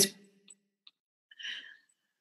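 A short, soft breath, like a sigh, about one and a half seconds into a pause in speech, with two faint mouth clicks before it.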